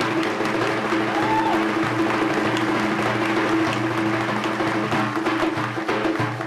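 Daf, the large Kurdish frame drum, played by hand in a dense, continuous run of fast strokes.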